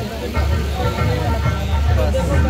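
Busy background of voices and music, likely from the stage's loudspeakers, over a steady low rumble.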